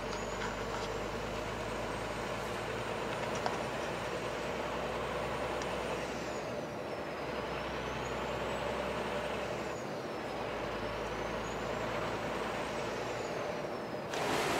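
Steady engine and road noise inside the cab of a Scania truck cruising along a highway, with a faint high whine that wavers slowly up and down in pitch.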